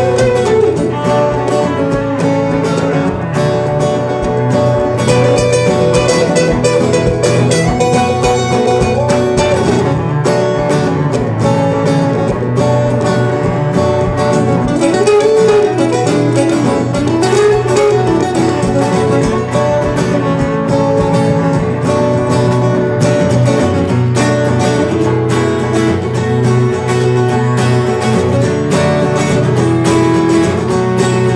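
Instrumental break of a live folk song: acoustic guitars picked and strummed under a cello playing held notes, with a few sliding phrases about halfway through.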